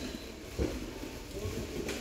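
Quiet shop background with a soft knock a little past halfway and a sharp click near the end, from handling.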